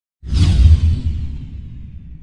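Logo-reveal whoosh sound effect: a sudden swoosh about a quarter second in, with a deep rumble under it, fading away.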